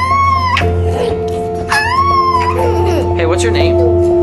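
Two high-pitched playful squeals, each under a second, rising and falling in pitch, with background music playing steadily underneath.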